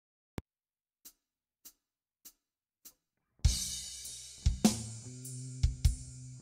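A click, then four soft, evenly spaced ticks counting in. About three and a half seconds in, a heavy stoner-metal jam starts on electric guitar through Abominable Electronics effects: a low sustained riff with drums, a crash cymbal and hard kick hits.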